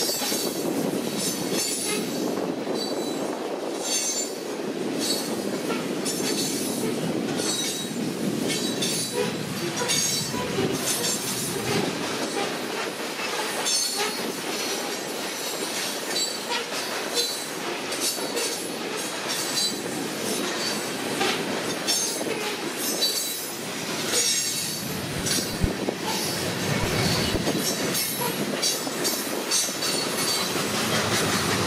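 Covered hopper cars of a freight train rolling past: a steady wheel-on-rail rumble with frequent clacks as wheels pass over rail joints, and a thin high squeal from the wheels.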